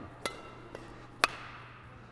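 Badminton rackets striking a shuttlecock in a fast back-and-forth exchange: three sharp hits about half a second apart, the first and last louder with a brief ring from the strings.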